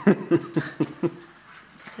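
A woman laughing: a quick run of about five short laughs in the first second, then fading off.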